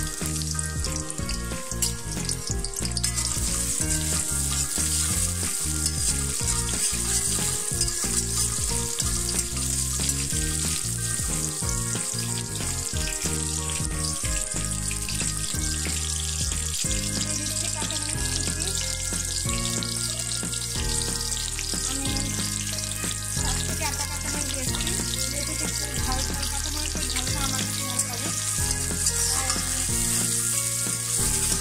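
Sliced red onions frying in hot oil in a metal wok: a steady, continuous sizzle, with a spatula stirring them near the end.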